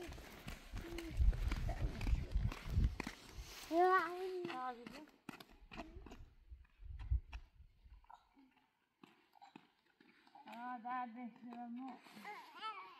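Footsteps on a paved road, a steady run of short scuffs and taps, with low rumbling wind on the microphone in the first few seconds and again around seven seconds. A voice calls out briefly around four seconds in and again near the end.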